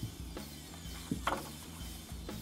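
A sheet of printed scrapbook paper being turned over in a paper pad: a short crisp paper rustle a little over a second in, over background music with a steady beat.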